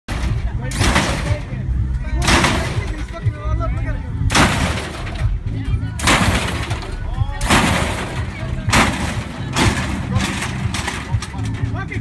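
A lowrider on hydraulic suspension hopping, its front end slamming down hard again and again, about eight loud crashing hits one to two seconds apart. Music with a heavy bass and crowd voices run underneath.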